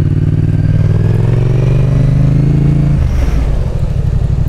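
Yamaha XSR 700's parallel-twin engine pulling on the throttle, its pitch rising slightly. About three seconds in the throttle snaps shut and it falls to a low, even pulsing as the bike brakes hard to test its ABS.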